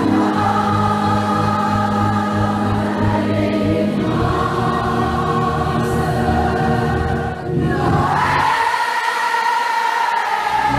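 Music with many voices singing together in chorus, holding long notes. About eight seconds in the voices swell upward and hold a high note.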